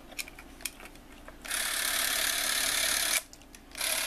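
Canon 310XL Super 8 movie camera's motor running as the trigger is pulled: a steady whir for under two seconds, a short stop, then a second run near the end, showing the camera works. A few light handling clicks come first.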